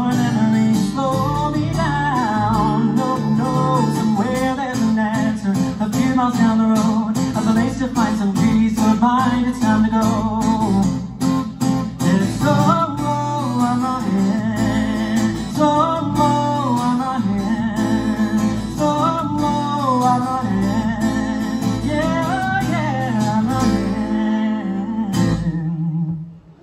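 Strummed acoustic guitar with a man singing long, wavering held notes over it in a live acoustic song. The music stops right at the end.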